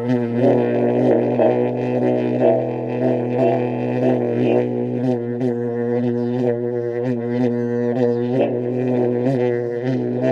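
A flute and flugelhorn duo playing a continuous didgeridoo-like low drone with a stack of overtones that pulse and shift about twice a second. The drone runs without a break for breath, the mark of circular breathing.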